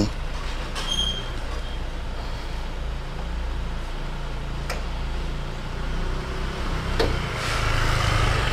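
Toyota Innova's 2KD 2.5-litre four-cylinder turbodiesel idling steadily. There are two sharp clicks, about five and seven seconds in, as the bonnet latch is released and the bonnet is raised.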